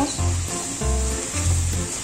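Background music with a steady bass beat, over the faint sizzle of shredded beef and vegetables being stirred in a pot.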